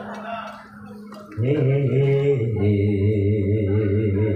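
Music: an electronic keyboard holds long, wavering organ-like chords. It resumes suddenly about one and a half seconds in, after a brief lull.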